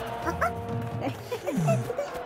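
Cartoon background music with short wordless character vocal sounds over it, small yips gliding in pitch, and one longer sound falling steeply in pitch in the second half.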